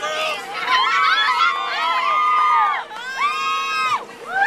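A group of young girls cheering together, many high voices overlapping in long drawn-out whoops, with one held whoop near the end. A faint steady hum runs underneath.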